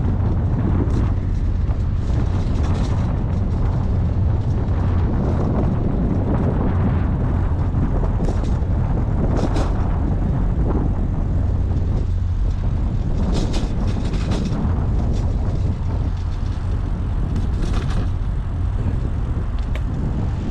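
Steady wind rumble on the microphone and road noise from a bicycle riding at speed, with a few brief, sharper bursts of noise about halfway through and again near the end.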